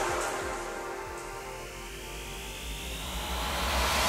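A break in the background music: a whooshing noise sweep that fades down and rises again as a transition, over a low steady hum, before the beat comes back in.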